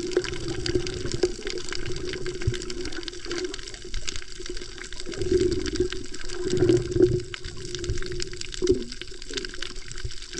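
Underwater sound picked up by a submerged camera: a steady rush of moving water with a low hum and many faint clicks throughout, swelling louder about five to seven seconds in.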